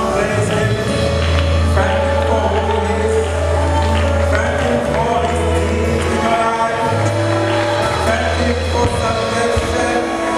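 Live gospel worship music from a church band, with long held bass notes under keyboard and guitar, and singing.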